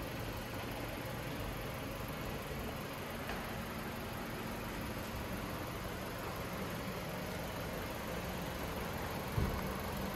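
Steady background hum and hiss, with a single brief thump near the end.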